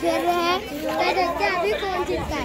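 Children's voices: a boy talking close by, with other children around him.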